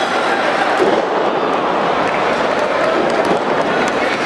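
Arena crowd shouting and chattering steadily at a lucha libre match. A brief louder moment about a second in comes as a wrestler is slammed onto the ring mat.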